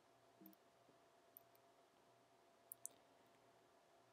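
Near silence: room tone with a faint steady hum, broken by two faint clicks in quick succession a little before three seconds in.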